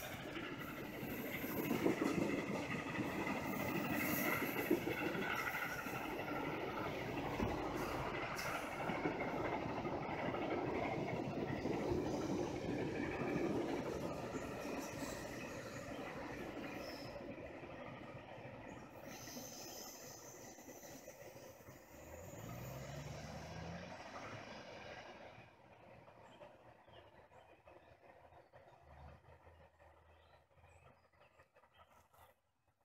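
Passenger cars of a steam excursion train, Norfolk & Western 611's train, rolling along the rails below, a steady rumbling of wheels on track. It fades gradually after about fifteen seconds as the train draws away, and is faint in the last few seconds.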